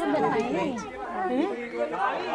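Several people talking at once, their voices overlapping in close conversation.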